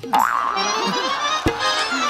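A comic musical sound effect that starts suddenly, with a sliding, wobbling pitch over a full music backing.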